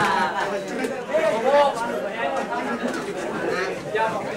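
Several young people's voices talking over one another in indistinct chatter.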